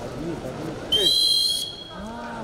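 Referee's whistle: one short, loud blast starting about a second in, two steady high tones sounding together for under a second. The blast stops the action in a wrestling bout.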